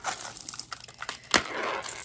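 Costume jewelry being handled in a tray: a sharp clack a little over a second in, then a brief rattle of beads as a beaded necklace is picked up.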